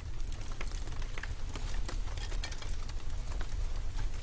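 A deep, steady low rumble with scattered crackles and ticks over it.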